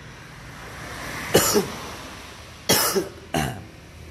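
A person coughing: a drawn breath, then a few short coughs in two bouts, one about a second and a half in and another near the end.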